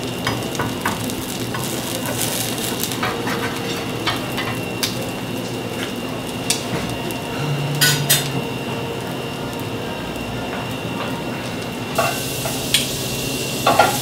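Grated potato rösti frying in a hot pan: a steady sizzle, broken by a few sharp clicks of a spatula against the pan.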